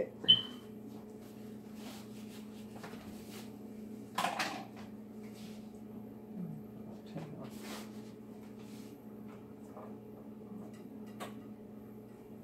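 Kitchen tidying: a sharp ringing clink just after the start, a short clatter about four seconds in, and scattered small knocks of things being handled and put away on the counter, over a steady low hum.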